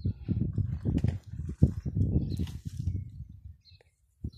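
Irregular low rumbling and thumping close to a handheld phone's microphone, dying away near the end.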